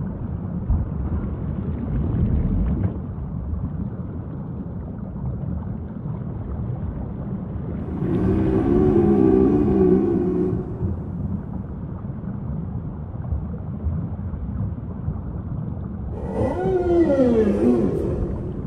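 Whale calls over a steady low underwater rumble: a wavering call lasting about two seconds, starting about eight seconds in, and a downward-sweeping call near the end.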